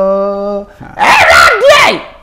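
A man's voice holding one long, steady sung note that stops just over half a second in, then a loud vocal cry that swoops up and down in pitch through most of the second half.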